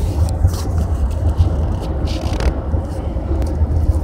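Steady low rumble of a car driving at road speed, heard inside the cabin, with a couple of brief rustles.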